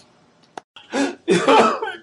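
A man coughing: a short cough about a second in, then a longer, harsher one.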